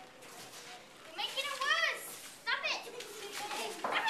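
A child's high-pitched voice making two short wordless cries, one about a second in and one midway through, with a short sharp noise just before the end.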